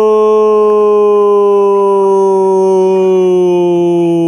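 A man's long, held "gooool" goal cry in Portuguese football narration, one loud sustained note whose pitch sags slowly.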